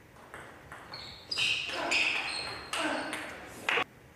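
Table tennis ball clicking off bats and table in a rally: a string of sharp pings, louder and ringing in the second half, with a last sharp knock just before the end.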